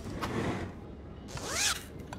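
A short rasping swell, then about a second later a brief squeak that rises and falls in pitch.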